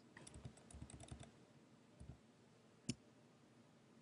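Faint clicks of a computer keyboard and mouse: a quick run of key taps in the first second or so, then one louder single click about three seconds in.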